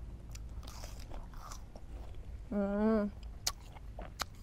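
Crisp wax apple (Vietnamese mận) being bitten and chewed, with soft crunching in the first half. About two and a half seconds in comes a hummed 'mmm' of a voice lasting about half a second, then a sharp click of a bite.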